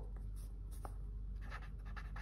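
Pen writing on paper: faint, short scratching strokes as a word is written out.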